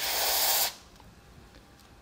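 A short hissing burst of freeze spray from an aerosol can, squirted through its thin red extension straw onto the FPGA chip to chill it. It lasts under a second and cuts off sharply.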